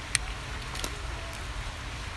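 A lighter clicking as a tobacco pipe is relit: one sharp click just after the start and a fainter one a little under a second in, over a steady low rumble.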